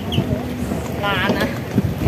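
Wind buffeting the microphone outdoors, making a steady low rumble, with a brief voice about a second in.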